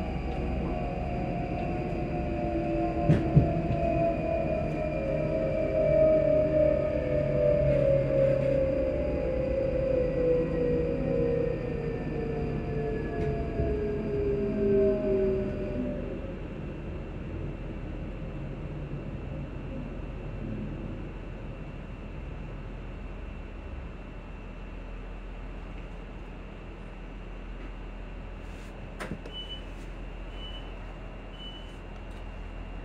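Electric train's traction motors whining in several tones that fall together in pitch as it brakes into a station, the whine fading out about halfway through as the train comes to a stop. After that, a steady low hum while it stands, with a sharp knock about three seconds in.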